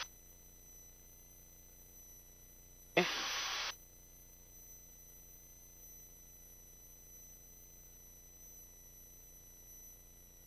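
Near silence with faint steady high-pitched electronic tones. About three seconds in, one short spoken 'okay' comes with a brief burst of hiss as the headset intercom opens.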